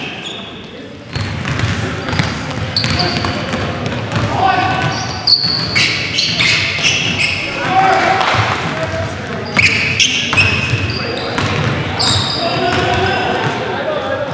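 Pickup-style basketball game in a large gym: the ball bouncing on the hardwood floor, many short high-pitched sneaker squeaks, and players' indistinct shouts, all ringing in the hall.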